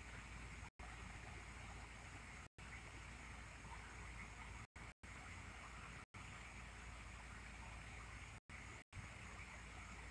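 Faint, steady background hiss with no distinct source, broken by several brief dropouts to silence.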